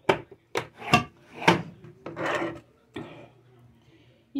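A series of about six short, dry scraping strokes, with one longer, grainier rasp near the middle.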